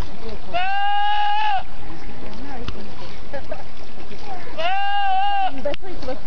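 Goat screaming twice, each a loud, drawn-out call of about a second held on one pitch, a few seconds apart, over steady background noise.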